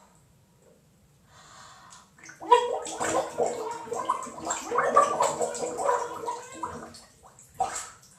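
A person's voice sounding under water, muffled and bubbling like gargling, starting about two and a half seconds in and running for about four seconds. A single short, sharp burst follows near the end.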